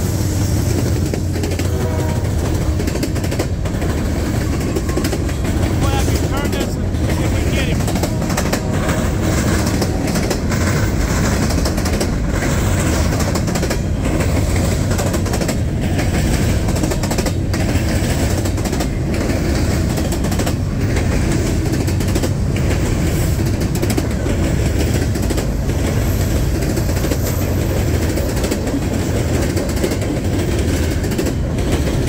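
Diesel freight train passing close by: a Norfolk Southern locomotive's engine goes by, then covered hoppers and tank cars roll past with a steady, loud wheel rumble and clickety-clack over the rail joints.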